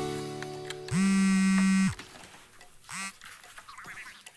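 The last sustained notes of guitar music fade away. Then a phone's low, buzzing ringtone sounds once for about a second, with a brief second tone near the end.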